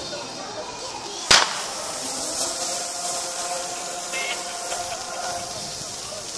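A pyrotechnic spark fountain going off with one sharp bang a little over a second in, then hissing steadily as it sprays sparks.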